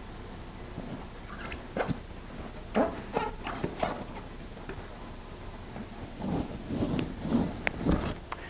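An aluminum board being pushed and worked onto an inflatable kayak's motor mount brackets, giving short scattered squeaks and scrapes in two spells, the second near the end.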